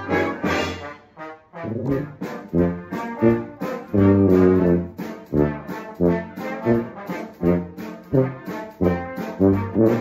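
Tuba playing a line of short, separated notes, with one longer held note about four seconds in.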